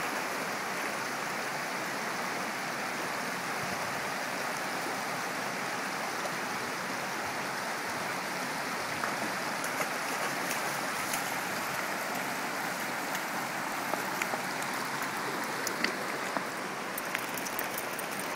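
Steady rush of water flowing over the rocks of a shallow creek, with a few light clicks and splashes in the second half from a dog wading and stepping among the stones.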